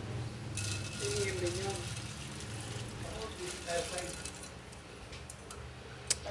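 Hot chicken oil with annatto seeds poured from the pan through a wire mesh strainer into a glass bowl. It is a splashing pour with many small crackles, starting about half a second in and tapering off toward the end.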